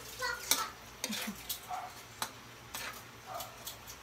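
Metal ladle stirring a stew in a large metal pan, clinking and scraping against it in a few scattered, irregular clicks.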